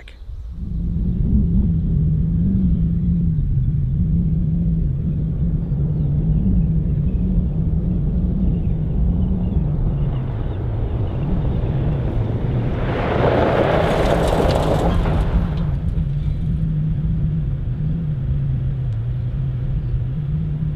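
A four-wheel drive running along a gravel road under a steady low rumble. About 13 seconds in, a louder burst of gravel crunching under the tyres lasts a couple of seconds as it brakes hard to a stop in a threshold-braking test.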